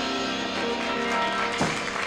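Live band led by an accordion, with bass guitar and drums, holding a sustained closing chord at the end of an up-tempo song, with a sharp final hit about one and a half seconds in.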